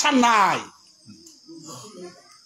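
A man's voice draws out one long syllable that falls in pitch and fades after about half a second. A quieter pause follows, with faint low speech and a thin, steady high tone underneath.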